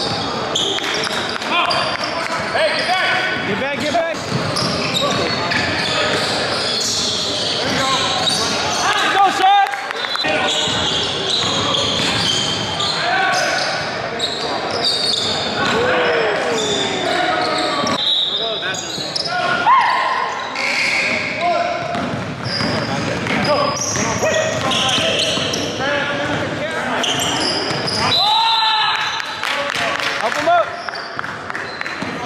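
Live basketball game sound in a gymnasium: a ball bouncing on the hardwood court amid indistinct players' voices, echoing in the large hall.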